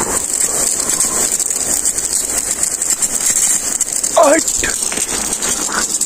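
Water gushing from a black plastic pipe and splashing over a man and onto the camera, a steady spraying hiss. A short wavering vocal cry breaks in about four seconds in.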